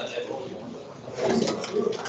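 Indistinct, halting speech from a voice, loudest during a burst in the second half.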